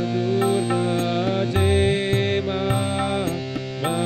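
Harmonium playing a devotional chant melody over a steady drone, with a voice singing long held notes that glide between pitches and light percussion ticks keeping time.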